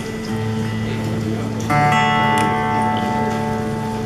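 Steel-string acoustic guitar played solo: low notes ring, then just under two seconds in a chord is struck and left to ring.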